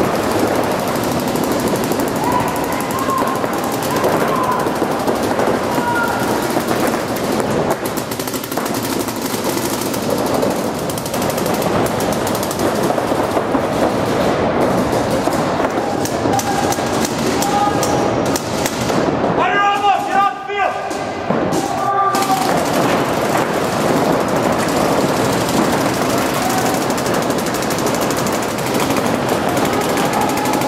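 Rapid, near-continuous fire from many paintball markers, shots overlapping throughout, with players' voices shouting over it at times.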